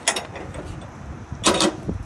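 Folding aluminum entry steps of a travel trailer being swung down and unfolded: a few light clicks, a metal rattle, then a loud clatter of knocks about a second and a half in as the steps drop into place.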